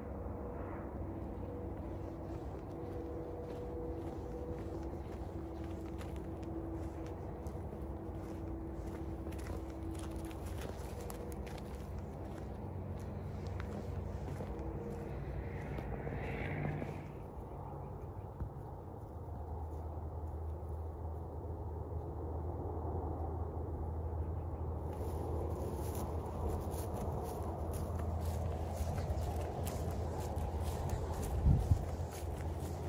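Outdoor ambience: a steady low rumble, with a faint steady hum over roughly the first ten seconds and scattered light clicks.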